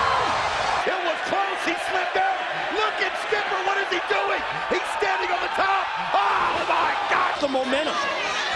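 Wrestling arena crowd noise: many voices shouting and cheering, with a few sharp knocks now and then. There is an abrupt change in the sound about a second in.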